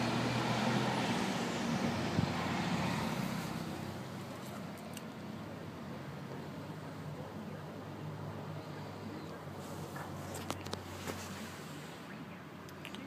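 Steady low hum inside a parked car's cabin, with a rushing noise that fades down after about four seconds and a few faint clicks near the end.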